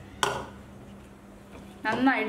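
A single sharp knock of a spoon against a mixing bowl of cauliflower florets in batter, about a quarter second in, with a faint steady hum underneath.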